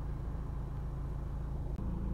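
Honda Civic 2.2 i-DTEC four-cylinder turbodiesel engine idling, heard from inside the cabin as a steady low hum.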